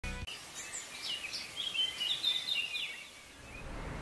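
Birds chirping: a run of short, quick rising and falling calls, which fade about three seconds in, leaving a faint low steady hum.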